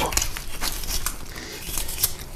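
Knife cutting off the dorsal fin of a large grass carp, sawing through the fin rays and skin in a quick series of small clicks.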